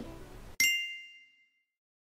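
A single bright bell-like 'ding' sound effect about half a second in, ringing and dying away over about a second.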